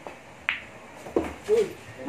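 Pool balls: a light tap of the cue tip on the cue ball, then a sharp click about half a second in as the cue ball hits a striped object ball, and a duller knock about a second in as the object ball drops into a pocket.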